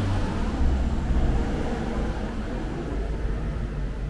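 Wind gusting across the microphone: a steady rushing noise with an uneven low rumble.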